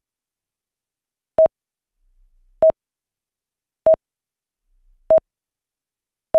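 Electronic countdown timer beeps: four short mid-pitched beeps, evenly spaced about a second and a quarter apart, with silence between them.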